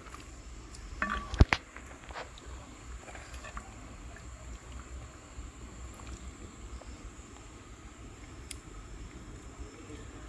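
A wooden ladle knocking against a large metal cooking pot while stirring: a few light knocks about a second in, with one sharp knock about a second and a half in. After that there is only faint background noise.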